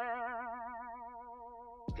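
A segment-transition sound effect: one twangy, boing-like note with a wobbling vibrato, fading steadily and cut off just before the end.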